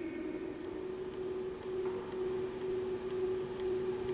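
Room tone: a steady hum holding one pitch, with a fainter lower tone, over a soft hiss.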